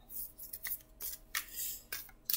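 A deck of cards being shuffled by hand: several soft swishes of cards sliding over one another.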